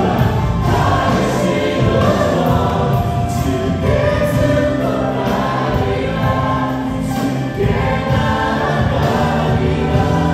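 Live contemporary worship song: male and female voices singing together into microphones over acoustic guitar and a full band with drums, with regular cymbal strokes.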